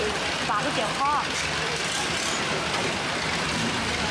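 Steady background rumble and hiss, engine-like, with a few brief voices in the first second.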